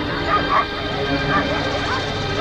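A dog yelping and whimpering in a few short calls over a steady held music drone.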